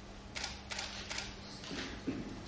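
Camera shutters clicking four times in quick succession, each a short separate snap about a third to half a second apart.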